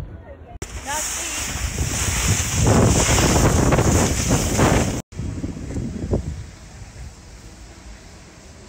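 Wind rushing over a phone microphone and a snowboard sliding and scraping over snow during a first-person run downhill. It builds to its loudest about three seconds in and cuts off suddenly about five seconds in.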